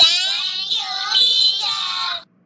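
A high-pitched, child-like voice saying "Thank you, teacher" in a drawn-out, sing-song way.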